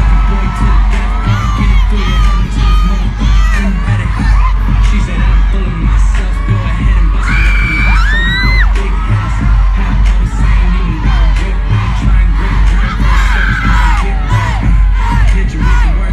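Concert crowd screaming and cheering in high-pitched cries over loud dance music with a heavy bass beat.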